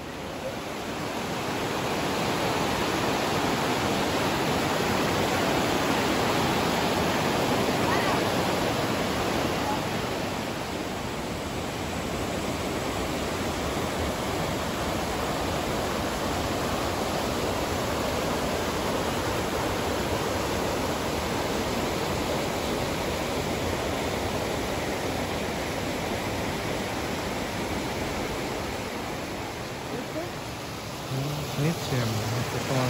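Mountain river rushing over and between large granite boulders in rapids: a steady, dense rush of white water that comes up over the first couple of seconds and then holds.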